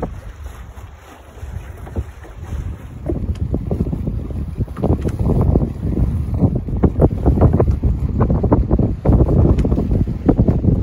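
Wind buffeting the microphone over water splashing along the hull of a dhow under sail. It is quieter for the first few seconds, then louder and gusty.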